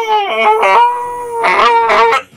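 A man's own voice making a long, loud, high-pitched creature scream as a horror sound effect, held on one pitch with a few brief wavers.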